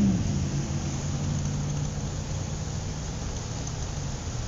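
A car engine running steadily under way over a haze of road noise. Its pitch dips a little in the first moment, then holds steady. It is a borrowed engine recording dubbed over the drive, not the car's live sound.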